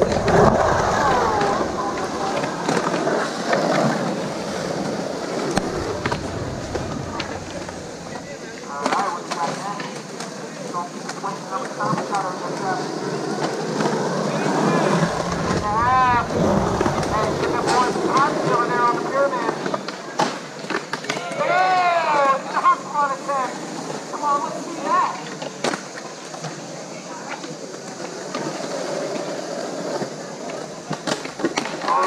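Skateboard wheels rolling on concrete, rumbling loudest at the start and again about halfway, with scattered sharp clacks of the board. Indistinct voices of onlookers talk and call out through the middle and latter part.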